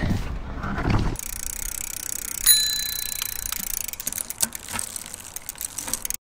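A bicycle bell rings once about two and a half seconds in and rings on for about a second as it fades, followed by a scattering of light clicks.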